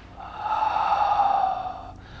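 A man's long breathy exhale through the mouth, swelling and then fading over about a second and a half.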